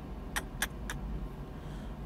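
Low steady room hum with three short clicks about a quarter of a second apart in the first second.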